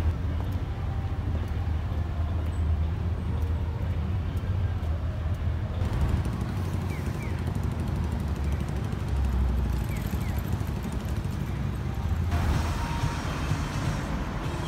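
City street ambience: a steady low rumble of road traffic with general street noise, changing abruptly twice where the recording is cut between scenes.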